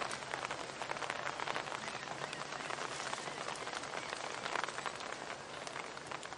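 Rain falling steadily, heard as a dense, even crackle of drops.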